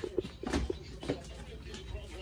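A few light knocks and shuffles from two people carrying a heavy tile-topped wooden table, with faint voices in the first second.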